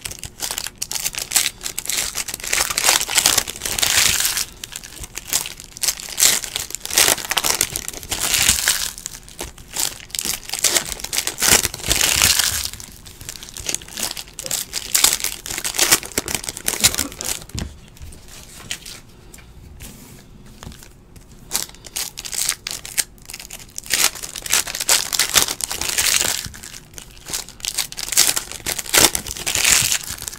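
Foil trading-card pack wrappers being crinkled and torn open by hand, with cards slid out and handled, in irregular bursts of crackling. A quieter stretch comes about halfway through.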